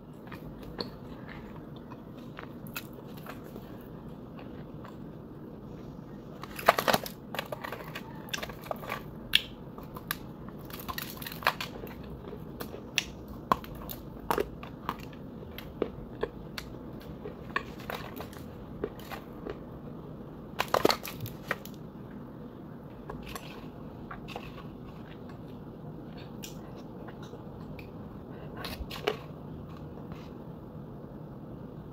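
Close-miked bites and crunchy chewing of dry, brittle white clay chunks. Two loud crunching bites, about a quarter and about two thirds of the way through, are each followed by a run of sharp, separate crunches, over a steady low hum.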